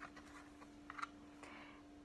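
Cardboard board-book page being turned: a few faint taps and rustles, the loudest about a second in.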